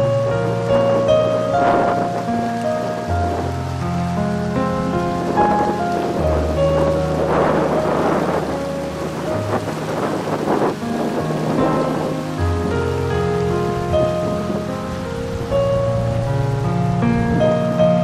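Background music of slow, sustained keyboard chords, with a rushing noise swelling in and out over it through the middle.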